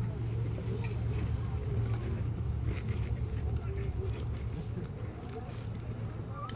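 Faint voices of people gathered close by, over a steady low rumble.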